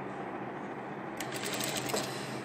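Sewing machine running steadily, stitching gathers into soft tulle, with a few light clicks from about a second in.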